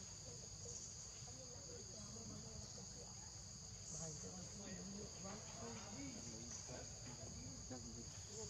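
Faint, steady high-pitched insect chorus, crickets or cicadas, over a low rumble, with some faint wavering sounds in the lower-middle range.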